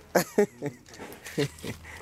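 A few short, broken vocal sounds, separated by brief pauses.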